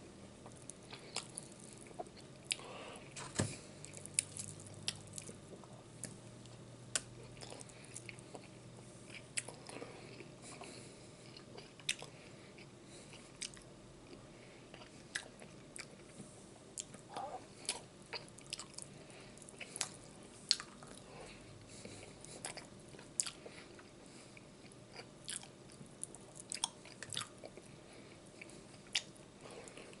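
A person eating barbecue ribs close to the microphone: chewing and biting, with frequent short, irregular clicks and crunches.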